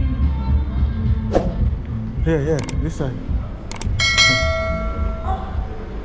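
A bell-like ding about four seconds in, a sharp strike that rings on for about a second and is followed by a second, higher tone, over a steady low rumble.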